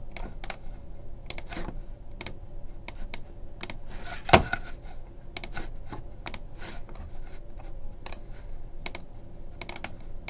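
Typing on a computer keyboard: irregular key clicks, with one louder knock about four seconds in.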